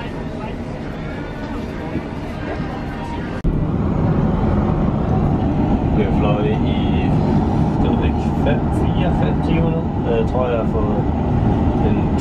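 Steady low rumble of an airliner's cabin in flight, most likely an Airbus A380, getting suddenly louder at a cut about three and a half seconds in.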